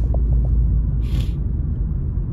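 Car cabin noise while driving slowly: a steady low rumble from engine and tyres, with a brief hiss about a second in.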